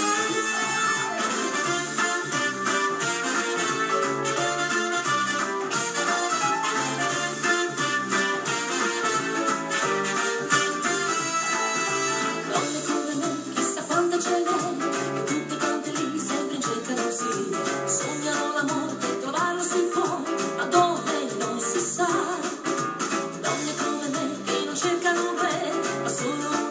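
Live dance band playing an upbeat song with a steady beat, with electric guitars and trumpet; a woman's singing voice comes in about halfway through.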